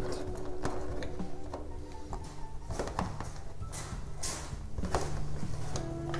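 Background music with steady held notes, over a few light clicks and taps of small plastic and metal water-pump parts and a screwdriver being handled on a metal workbench.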